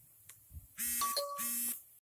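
Electric buzzer of a box stretch-wrapping machine's control panel sounding two short buzzes about half a second apart, with a brief higher tone between them.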